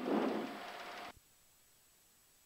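Rushing cockpit noise, with a faint steady tone in it, comes through the pilot's open headset boom mic and fades for about a second. It then cuts off abruptly as the aircraft intercom's voice-activated squelch closes, leaving silence.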